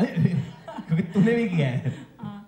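A man chuckling and laughing in short broken bursts, mixed with speech.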